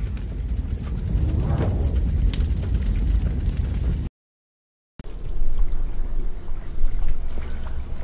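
Low rumbling ambient noise with a faintly watery quality, broken by about a second of dead silence midway.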